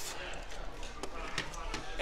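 Low background murmur of a busy hall with distant voices, and a few faint light clicks as die-cast toy cars are lifted off a plastic race track.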